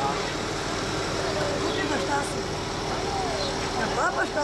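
Several people talking over one another, with a steady low hum underneath.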